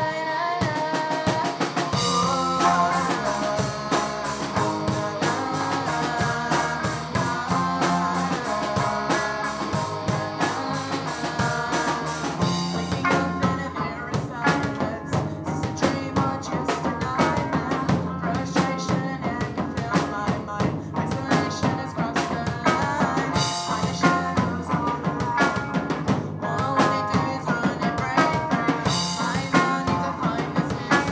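Live rock band playing through a club PA: electric guitars, bass guitar and a full drum kit, with lead vocals from the singing guitarist. The drums come in fully about two seconds in.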